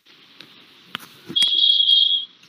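A single loud, high-pitched steady electronic tone, like an alarm beep, starting about two-thirds of the way in and held to the end.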